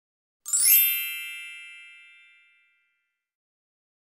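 A single bright chime sound effect about half a second in: a quick glittering sparkle over a ringing tone that fades out over about two seconds. It is the transition cue as the video cuts to the next section's title card.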